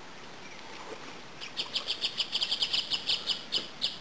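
A rapid series of short, high chirps, about six a second and evenly spaced, starting about one and a half seconds in.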